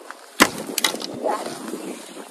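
Old, rusty long-handled loppers cutting through a thick, woody Limelight hydrangea stem: one sharp crack about half a second in as the stem snaps, followed by a couple of smaller clicks and the rustle of the cut branch.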